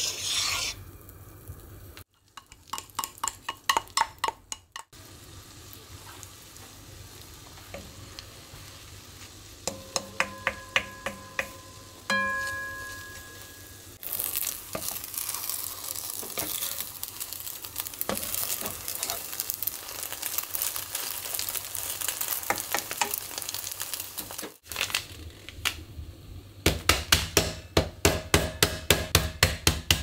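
A wooden spatula scraping and stirring in a ceramic-coated frying pan, with a few light ringing clinks. Then crepe batter sizzles in the pan for about ten seconds, and near the end comes a quick run of about four thuds a second: a bag of mixed nuts being pounded to crumbs.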